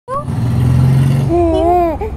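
A baby cooing: after a low rumble in the first second or so, a drawn-out, wavering coo rises and falls in pitch through the second half.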